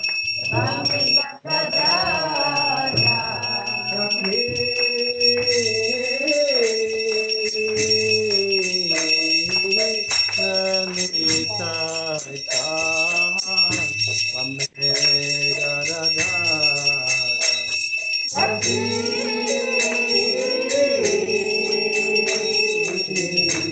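Devotional kirtan: voices singing a chant in long held notes over steady jingling percussion, with two brief breaks.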